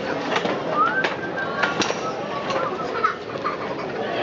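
Outdoor square ambience with a steady murmur of voices, several sharp clicks in the first two seconds, and a short rising whistle-like call about a second in, followed by a few brief curling calls later on.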